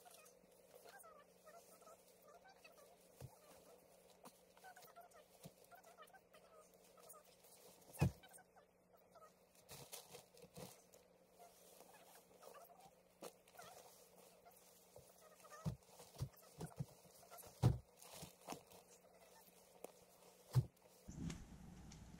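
Faint bird calls recurring on and off, with scattered knocks and bumps as bedding and gear are handled on a tent floor; the sharpest knocks come about eight seconds in and again late on.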